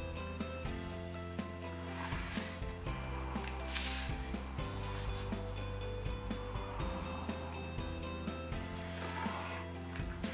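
Light instrumental background music with a steady beat, with a pencil scraping on paper in a few short strokes, about two, four and nine seconds in.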